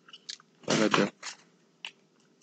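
A brief voiced sound from a person, like a short murmur, about two-thirds of a second in, with a few faint light clicks around it.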